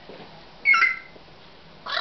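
Pet parrot giving one short, loud, high-pitched call about half a second in, and starting another vocal sound right at the end.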